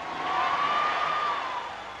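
Live concert audience cheering, swelling about half a second in and fading near the end, with one long high note rising and falling over the noise.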